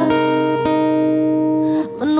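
Acoustic guitar chords, strummed and left to ring: a new chord is struck about half a second in and sustains, and the sound dips briefly near the end.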